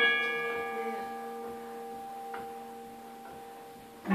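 Self-built MIDI-triggered carillon striking several tuned metal notes at once, a bell-like chord that rings and slowly fades. The higher notes die away first. A faint click comes a little over two seconds in.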